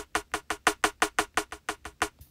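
Snare drum sample in the Koala sampler, retriggered from a velocity-sensitive pad as a fast roll of about eight hits a second. The hits get steadily quieter as the velocity drops.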